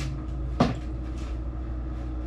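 A single sharp knock about half a second in, over a steady low room hum, with a few fainter clicks.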